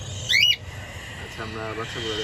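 Budgerigar chicks in a nest box calling: one short, sharp, high squawk about half a second in, then a quieter, lower, wavering call near the end.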